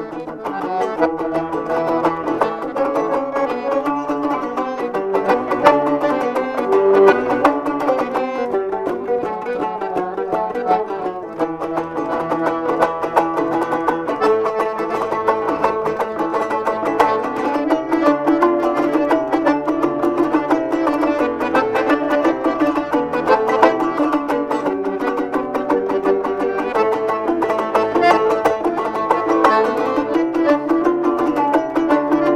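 Kyrgyz komuz, a three-string fretless lute, strummed rapidly in a lively folk tune, with an accordion playing along; instrumental, no singing.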